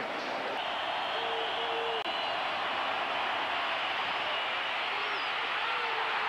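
Large football stadium crowd cheering and yelling in a steady, loud wash of noise, heard through an old television broadcast's sound.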